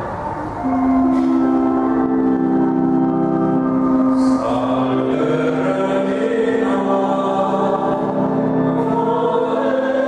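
Choir singing a slow hymn in long, held notes that swell in about half a second in.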